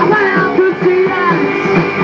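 Punk rock band playing live: electric guitar, bass and drums at full volume, with the singer's voice over them.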